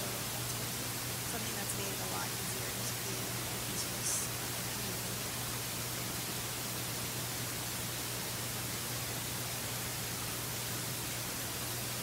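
Steady hiss and a low steady hum, the background noise of a conference-room recording, with faint, distant speech in the first couple of seconds and a light click about four seconds in.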